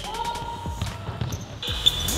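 Basketball bouncing on a hardwood gym floor during a game, a series of short knocks, with sneakers squeaking briefly.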